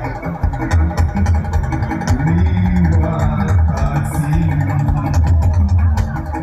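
Live gospel band playing loudly: a heavy, pulsing bass guitar line and drum kit hits with keyboard, and a voice over the top.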